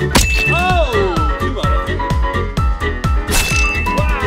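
Background music with a steady beat, overlaid with a bright ding sound effect about a quarter second in and again near the end, marking sword hits on thrown fruit. Between the dings, an arching, falling swoop effect.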